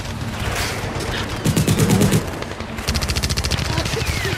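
Rapid automatic gunfire, starting about a second and a half in and running on, with a brief break partway through and a heavy rumble under the first stretch.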